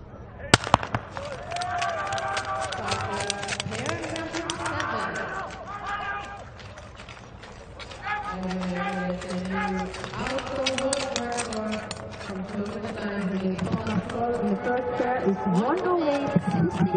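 A starting gun fires about half a second in, two sharp cracks close together, sending the skaters off at the start of a 1000 m speed skating race. After it come voices shouting, with many sharp claps and clicks.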